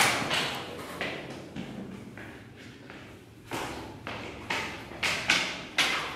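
Footsteps going down carpeted stairs: dull thuds, the loudest at the very start, then after a quieter stretch in the middle about two a second.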